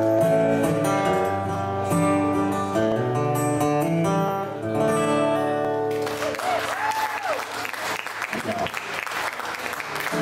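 Acoustic guitar playing the closing bars of a song, with held notes ringing, until it stops about six seconds in. Audience applause and cheering follow.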